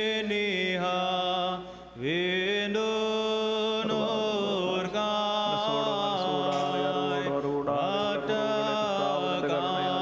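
Liturgical chanting: a hymn sung as a slow, melodic chant, with a brief break about two seconds in before the singing carries on.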